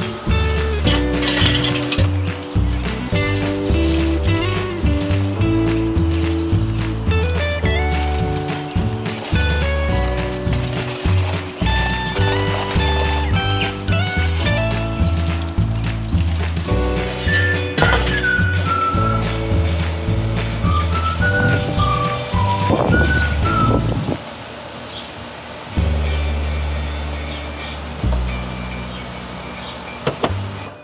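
Background music: held melody notes over a steady bass line, with the bass dropping out briefly about three-quarters through.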